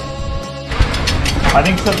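Rapid ratcheting clicks from a road bike's freehub as the bike is moved, following a short stretch of background music that cuts off less than a second in.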